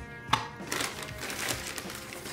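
A plastic razor case set down on a cloth-covered table with a single click, then a paper bag crinkling as a hand rummages in it, over quiet background music.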